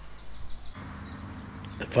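Quiet background noise that changes about three-quarters of a second in to a faint steady low hum. A man starts speaking near the end.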